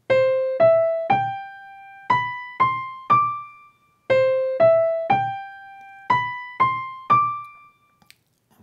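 Sampled piano played by a web app, running a short rising six-note riff and then looping back to play it a second time about four seconds in. Each note is struck and dies away.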